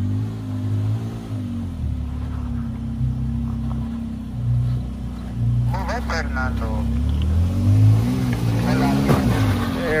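Toyota Tacoma pickup's engine revving up and down as the truck crawls up a snowy, muddy trail obstacle, with the revs climbing near the end.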